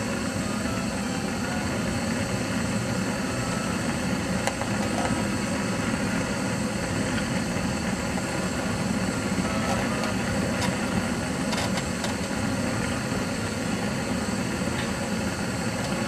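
Gas burner firing a homemade raku kiln: a steady, even rushing of the burning gas flame.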